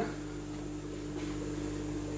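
Steady electrical or mechanical hum with a few constant low tones over a faint hiss, as from running equipment in a small room.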